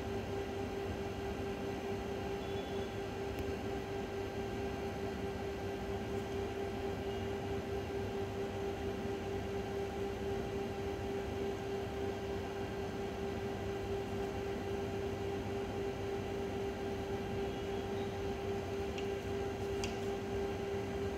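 A steady hum with one constant mid-pitched tone over a low, even hiss, unchanging throughout.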